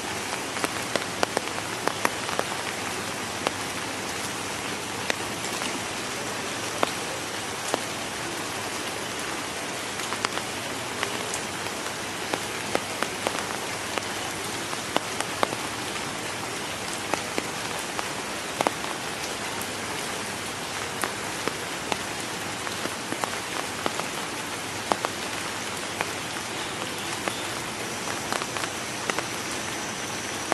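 Steady rain, with many separate drops pattering sharply on nearby water and leaves.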